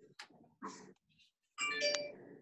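A brief bell-like chime of several steady tones sounds about one and a half seconds in, with a click inside it. Before it there are only faint, short scattered noises.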